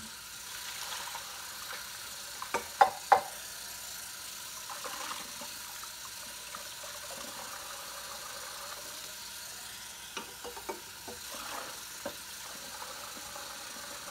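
Kitchen tap water running steadily into the sink as dishes are rinsed, with sharp clinks of dishes knocking together about three seconds in and a few softer ones near ten seconds.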